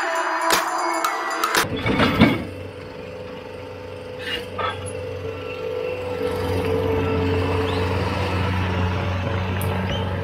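Music, then a cut about one and a half seconds in to a Bobcat T190 compact track loader's diesel engine running steadily. The engine grows a little louder from about six seconds in.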